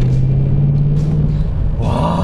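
BMW M850i's twin-turbo V8 pulling under acceleration, heard from inside the cabin: a steady low engine note that rises slightly in pitch over the first second and a half, over road rumble.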